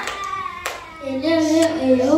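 A young girl begins singing into a microphone over a PA system about a second in, holding wavering notes. Just before, a single knock of the microphone being handled.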